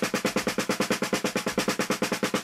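Snare drum played with wooden drumsticks in an even stream of bounced double strokes, about a dozen strokes a second: the slowest speed at which the doubles bounce cleanly.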